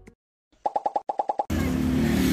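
A quick run of about ten short pitched pops, an edited-in transition sound effect. About one and a half seconds in, it gives way to the steady noise of street traffic.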